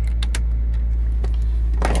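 A 2011 Mazda Verisa's 1.5-litre four-cylinder engine idling, heard from inside the cabin as a steady low hum. A few light clicks near the start come from a hand working the ignition knob.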